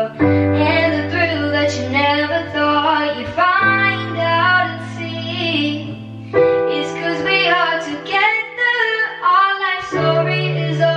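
A young woman singing a slow pop ballad, her melody over held accompaniment chords that change about three times.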